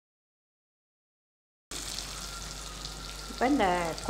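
Complete silence for nearly two seconds, then a steady sizzle of brinjal and radish pieces frying in oil in a kadai.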